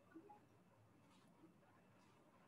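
Near silence: room tone, with a couple of faint, brief soft sounds.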